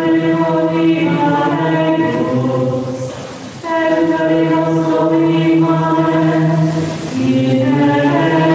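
Plainchant hymn sung by voices in unison, slow and legato, in long held phrases with a breath pause about halfway through and another near the end.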